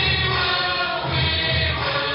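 Music with several voices singing together over a steady low beat, about two pulses a second.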